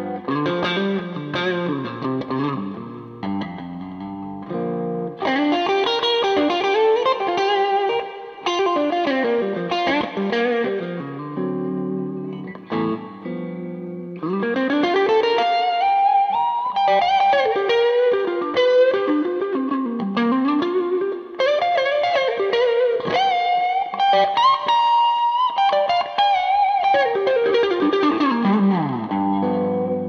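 Gibson Murphy Lab '56 Les Paul reissue goldtop electric guitar with P90 pickups, both neck and bridge pickups on, played through a slightly overdriven amp for a dirty blues tone. Chordal playing in the first half gives way to single-note lead lines with string bends from about halfway.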